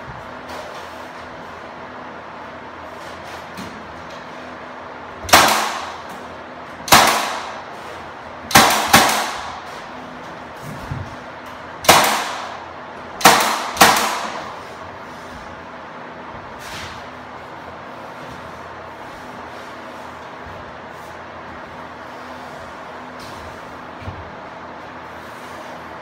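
Senco cordless 18-gauge brad nailer driving nails into window trim: seven sharp shots, each with a brief ring, spaced irregularly over about nine seconds, two of them fired in quick pairs.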